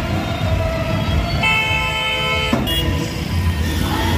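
A vehicle horn honks, one long steady blast of about a second starting about one and a half seconds in, then a short toot, over music and street noise.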